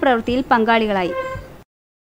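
A woman's voice-over narration in speech, trailing off on a long falling syllable about one and a half seconds in. The audio then cuts to dead silence.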